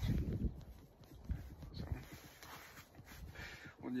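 Handling noise: a cluster of low thumps and rubs, heaviest in the first half second with a few more over the next two seconds, as a hand moves against the phone right at its microphone.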